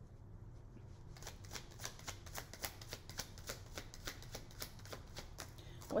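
A tarot deck being shuffled by hand: a quiet, quick and uneven run of card clicks that starts about a second in.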